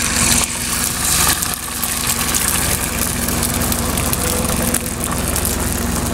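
Beaten eggs sizzling as they are poured into a hot electric frying pan, loudest at first and settling to a softer hiss, over a steady low hum.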